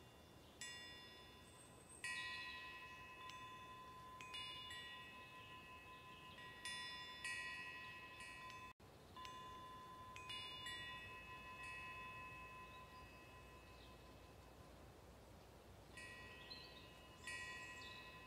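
Faint metal wind chimes struck at irregular intervals, a dozen or so strikes of high bell-like tones that ring on and overlap.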